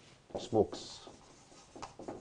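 Marker pen strokes rubbing on a whiteboard as a word is written out, with a man saying a short word about half a second in.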